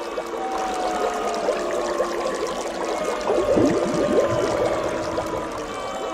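Bubbling water sound effect: a dense run of small bubble blips, busiest and loudest a little past the middle, over a few held steady tones.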